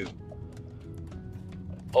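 Soft background film score of sustained held notes, with faint scattered clicks.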